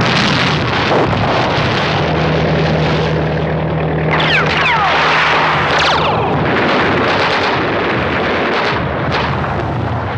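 Battle sound: engines droning under continuous gunfire and explosions, with several falling whistles about four seconds in.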